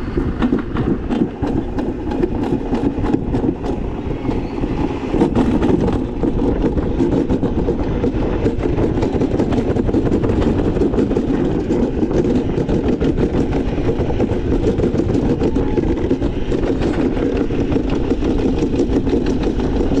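Wiegand summer bobsled rolling fast down its metal trough: the sled's wheels on the steel chute make a loud, steady rumble that grows louder about six seconds in and then holds.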